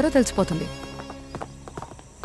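A man's voice finishes a line, then a few faint footsteps click on a hard floor.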